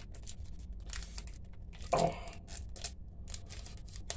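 Foil trading-card pack wrapper being torn open and crinkled in the hands, a quick series of sharp crackles.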